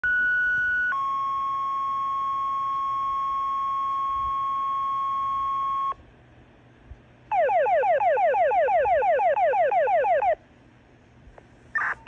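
Fire dispatch alert tones over a Uniden radio scanner's speaker: a short higher tone, then a long steady lower tone for about five seconds. After a pause comes about three seconds of rapid repeated falling chirps. These are the two-tone page and alert that set off firefighters' pagers before a call is read out.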